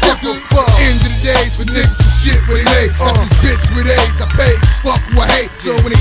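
Hip hop track with a heavy bass line and rapped vocals. The bass drops out briefly near the end.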